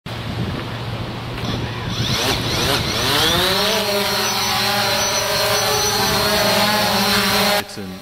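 DJI Phantom quadcopter's rotors spinning up for takeoff, their whine rising in pitch, then settling into a steady hover. The sound cuts off suddenly near the end.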